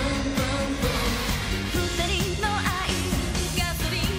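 J-pop song performed on stage: female voices singing a wavering melody over an upbeat pop backing track with a steady beat and bass.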